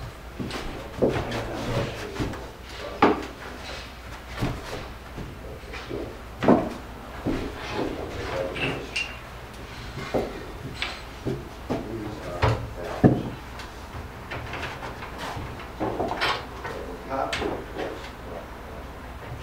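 Wooden parts of a folding field bed being taken apart by hand: irregular knocks and clatter of the wooden tester rails and pegs, the loudest knocks about 3, 6 and 13 seconds in.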